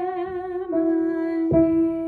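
A woman singing a held note with vibrato over upright piano, stepping down to a lower note under a second in; a new piano note is struck about one and a half seconds in.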